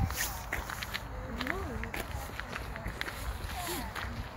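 Footsteps on a gravel path, an irregular run of small crunching steps, with faint voices of other people in the background.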